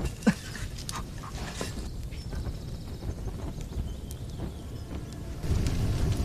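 Wood fire burning in a kiln firebox, with scattered soft crackles and snaps over a low steady noise. A short falling sound comes just after the start, and a low rumble comes in near the end.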